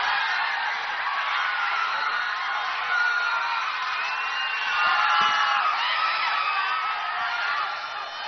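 Large crowd cheering, whooping and yelling, many voices overlapping at once, swelling a little about five seconds in.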